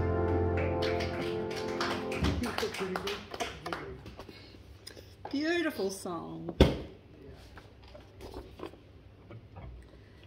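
The final chord of an upright piano and a bass guitar through a small amp ring out and fade over the first two seconds, ending a song. Then come light taps and rustles of sheet music being handled at the piano, a brief voice about five seconds in, and a single sharp knock a little later.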